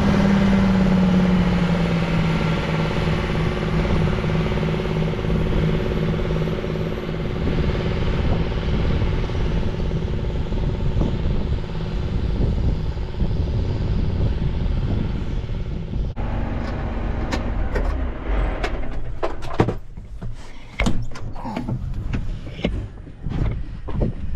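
John Deere 8530 tractor's six-cylinder diesel engine running steadily as it pulls an implement across a plowed field, its pitch dipping slightly just after the start and the sound fading as it moves away. In the last third, engine noise from close by with uneven gusts of wind on the microphone.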